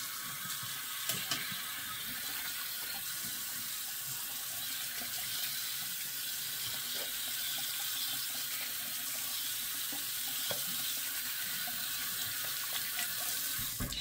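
Bathroom sink faucet running in a steady stream, with light splashing in the basin.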